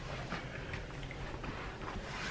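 A quiet room with a low background hum and faint, scattered rustling; no distinct sound stands out.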